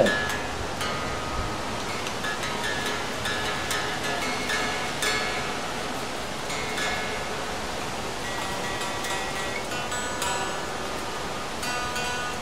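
Mexican Fender Telecaster electric guitar being tuned by ear: single notes picked one at a time and left to ring, a new note every second or two, as the strings are compared against each other.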